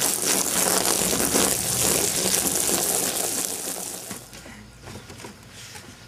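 Garden hose spray wetting flattened cardboard, a steady hiss of water that stops about four seconds in.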